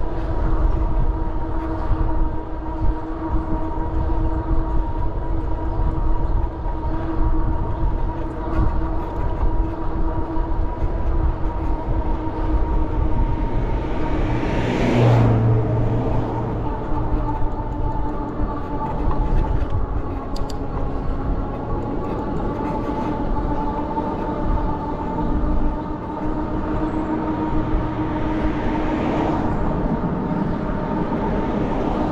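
Electric bike's motor whining at a steady pitch while cruising, over wind and road rumble. About halfway through a louder whoosh swells and fades.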